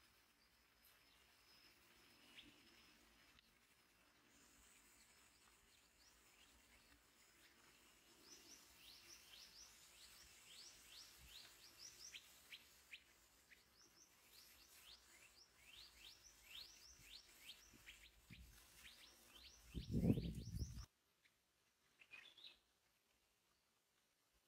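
Scarlet minivets calling: a rapid run of short down-slurred chirps, two or three a second, through most of the second half. Near the end comes a brief low rumble, the loudest sound, and then the sound cuts off abruptly.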